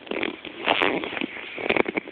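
Handling noise right at a phone's microphone as the phone is moved and turned around: rubbing and rustling with a few sharp clicks.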